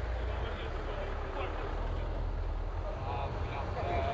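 Car driving slowly over a cobblestone street: a steady low engine and road rumble, with faint voices over it.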